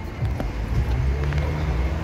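Street traffic: a motor vehicle's engine running close by, a steady low rumble.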